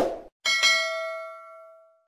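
Subscribe-button animation sound effect: a short burst right at the start, then a single bright notification-bell ding about half a second in that rings out and fades over about a second and a half.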